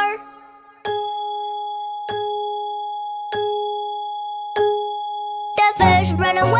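A clock chime striking the hour four times, one ding about every 1.25 s, each ringing on until the next. Music starts again just before the end.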